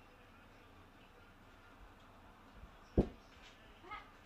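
Stirring in a glass measuring cup with a silicone spatula: mostly quiet, with one loud dull thump about three seconds in and a brief rising squeak near the end.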